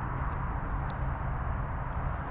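Steady outdoor background noise: an even low rumble with a few faint, short high ticks.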